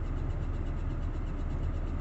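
Steady low rumble of a car heard from inside the cabin, its engine running.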